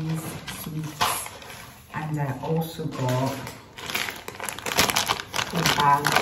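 Packaging crinkling and rustling as it is handled, in short bursts between snatches of a woman's voice.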